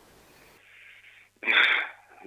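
A short, loud breath noise from a man, heard over a telephone line about one and a half seconds in. Before it comes faint line hiss with a low hum.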